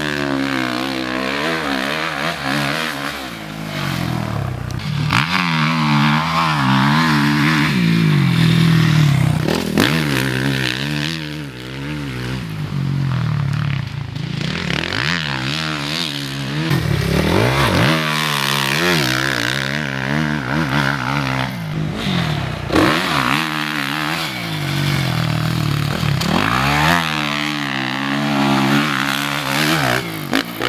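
Suzuki RM-Z450 motocross bike's single-cylinder four-stroke engine revving hard and backing off again and again as it is ridden, its pitch rising and falling with the throttle over several passes.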